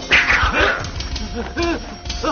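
Men crying out in short yelps during a scuffle, several in quick succession near the end, after a short noisy burst at the start.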